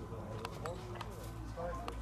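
Faint, indistinct voices of several people talking in the background, with a few light clicks and a steady low hum.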